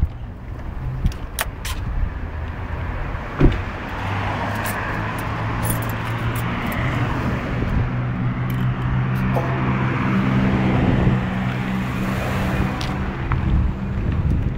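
Street traffic: a car engine's steady hum with tyre hiss as vehicles drive past on the road, after a single sharp knock about three seconds in.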